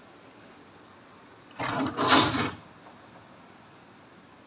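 A scraping, sliding noise in two quick rasps lasting about a second, around the middle, like a panel or door being slid aside.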